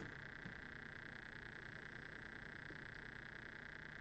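Faint steady buzzing background noise with no change, the constant noise floor of the recording.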